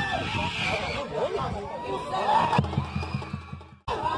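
Spectators' voices calling and shouting beside a football pitch, several at once. From about halfway in, a low engine hum runs underneath. Both cut off abruptly just before the end.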